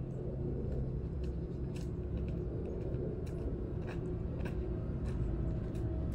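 A steady low rumble with a few faint scattered ticks.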